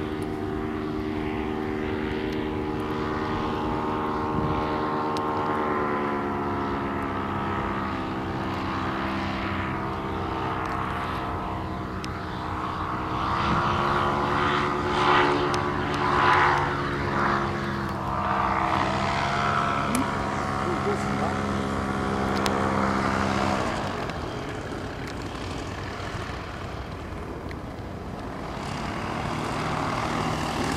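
Paramotor engine and propeller droning overhead, its pitch shifting as the throttle changes. About three-quarters of the way through, the engine is throttled right back and its note drops and fades.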